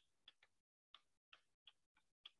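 Chalk tapping and scratching on a blackboard during handwriting, heard only faintly as a string of short ticks, about six in two seconds.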